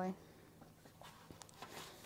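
Faint paper rustle of a sketchbook page being turned by hand, with a few light brushing sounds in the second half.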